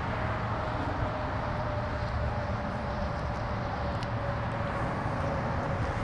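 Steady outdoor background noise, with a faint hum that drifts slowly lower in pitch.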